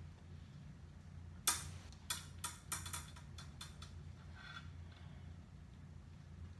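A run of light clicks and ticks, about eight in two seconds starting a second and a half in, from handling a fishing rod's lure and line at the reel, over a low steady hum.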